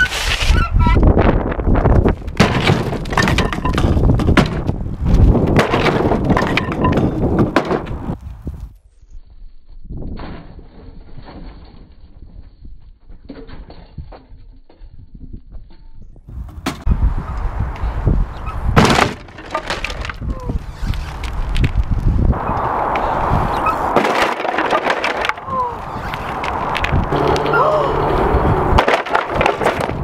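BMX bike rolling over tarmac and its long steel peg smashing into a discarded chipboard table, the board cracking and breaking apart and the bike clattering down, over several takes. A single sharp, loud crash stands out about two-thirds of the way through.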